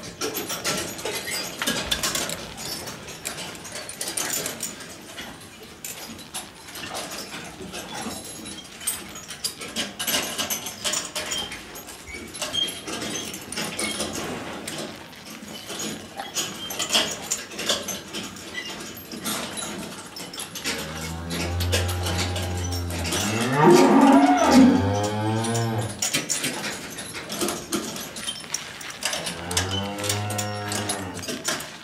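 Young cattle in a tie-stall barn. Over a background of scattered clicks and rustling, one animal gives a long, loud moo in the last third that starts low and bends up in pitch, and another moo begins right at the end.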